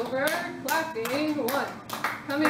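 Palms slapping along the arms and body in repeated light taps while a woman's voice speaks or counts over them.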